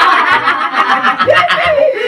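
Several men laughing loudly together.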